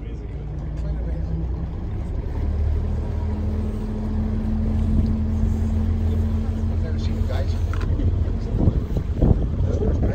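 Cruise boat's engine running steadily with a low hum. A higher steady tone joins it about three seconds in and drops out near the end.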